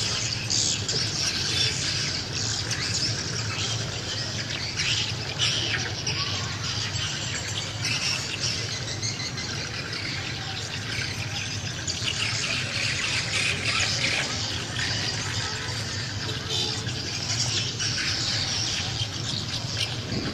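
Continuous chatter of many birds chirping and squawking, over a low steady hum.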